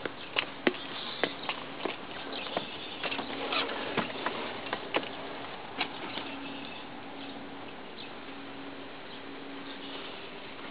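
Irregular clicks and knocks of footsteps on the stone entry steps and of the front door being handled and opened, fading out about six seconds in and leaving a steady hiss.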